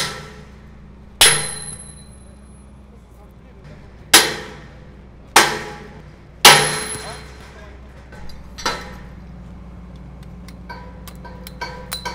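A hammer striking the steel connecting pins of a red lattice tower-crane jib to drive them out, five loud blows in the first seven seconds, each followed by a bright metallic ring. Lighter metal clinks follow near the end.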